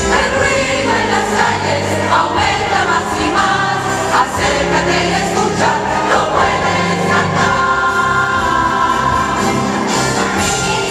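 Large choir singing a Christmas cantata song over a steady instrumental accompaniment with sustained bass notes.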